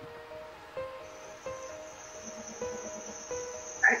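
Crickets trilling steadily, coming in about a second in, over soft music of slow held notes.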